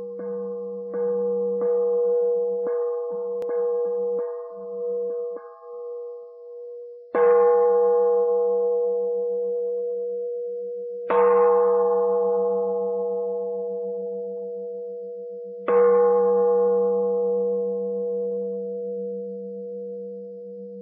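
A Buddhist bowl bell (singing bowl) struck: a series of light taps over the first six seconds, then three strong strikes about four seconds apart. Each strike rings on and fades slowly with a wavering tone.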